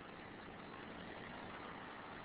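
Faint steady hiss of the recording's background noise: room tone in a pause between spoken sentences.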